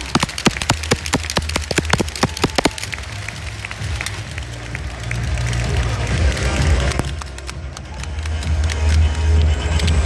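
Scattered hand clapping for about the first three seconds, over bass-heavy music played through a PA speaker. The music carries on alone after the clapping stops and grows louder near the end.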